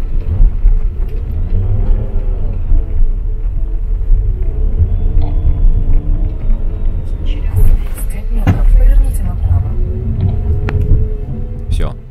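Skoda car's engine labouring under load on a steep, muddy dirt climb, heard from inside the cabin as a heavy rumble with the revs rising and falling, as the car loses grip and gets stuck. Brief voices near the middle.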